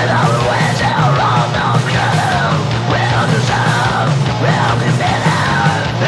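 Hardcore punk song with a screamed death-voice vocal over loud, dense distorted band backing.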